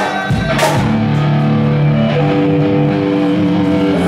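A live prog metal band playing: distorted electric guitars hold long notes that step to new pitches every second or so over bass and drums, with a crash about half a second in.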